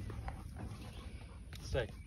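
A golden retriever gives one short whine near the end.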